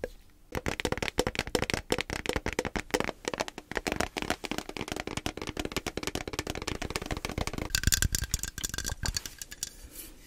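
Quick, irregular tapping and rattling on a lidded metal tin held close to the microphone. Near the end the sound turns brighter, with a faint ring.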